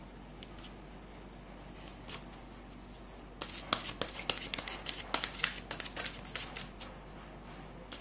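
A deck of tarot cards being shuffled by hand. There are a few faint clicks at first, then, about three and a half seconds in, a quick run of crisp card flicks and clicks that lasts about three seconds before it thins out.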